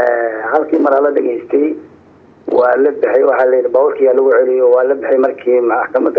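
Speech only: a man talking in Somali, his voice thin and narrow as if over a telephone line, with a short pause about two seconds in.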